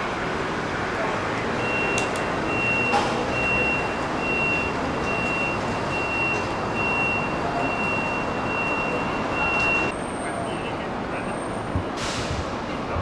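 Steady city street traffic noise, with a high electronic beep repeating about twice a second from about two seconds in until it stops shortly before the end.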